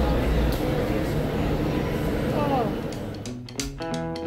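Steady low rumble and platform noise beside a standing monorail train, with a few faint voices. About three seconds in, this cuts to guitar music.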